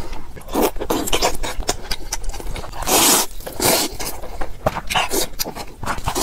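Close-miked eating sounds from a bowl of instant noodles: wet chewing and a string of short noisy slurps, the longest and loudest about three seconds in.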